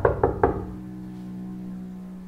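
Knuckles knocking on a wooden door: a quick run of raps that stops about half a second in, over a low, steady background-music drone.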